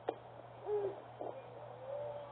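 A single sharp smack just after the start, fitting a pitched baseball popping into the catcher's mitt, followed by drawn-out calls from players across the field, the loudest about three-quarters of a second in and another near the end.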